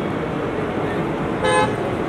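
A car horn gives one short toot about one and a half seconds in, over steady loud street noise of a vehicle and voices.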